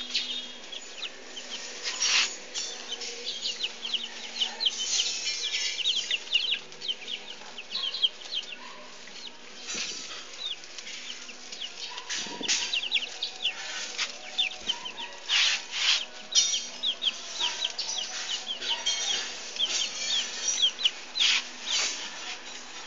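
Several baby chicks peeping continuously, a dense stream of short, high, downward-sliding peeps, with occasional brief rustling noises mixed in.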